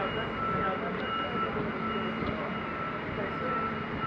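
Steady mechanical drone of harbour machinery, with a faint high beep that repeats on and off.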